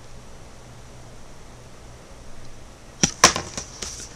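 Low room hum, then a quick cluster of sharp clicks and rustles about three seconds in from baseball trading cards being handled.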